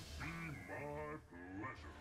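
Faint cartoon dialogue from the episode's soundtrack: a voice speaking a few words in short phrases, over a low steady hum.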